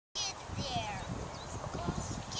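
Faint, indistinct voices with short high-pitched calls, and no clear words.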